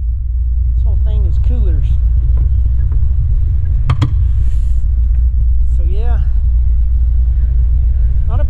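A steady low rumble throughout, with one sharp click about four seconds in as the flush pull latch of a boat's seat storage hatch is worked.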